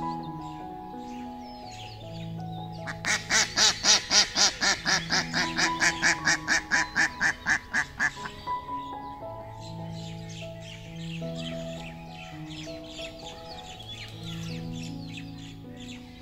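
A domestic duck quacking in a rapid run of about five quacks a second, starting about three seconds in, loudest at first and fading out over about five seconds. Background music with slow held notes plays throughout.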